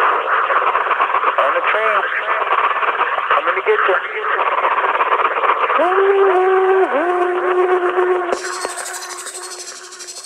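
Sampled voices that sound as if played through a radio, muffled and thin, layered in an industrial music collage. Around six seconds in, a held wavering tone enters, dipping in pitch each time it restarts. Just after eight seconds a bright hiss of static cuts in and the sound fades down.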